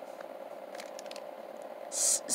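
Faint handling noise from a packaged car air freshener and the phone filming it: a few soft ticks and rustles over a steady background hiss.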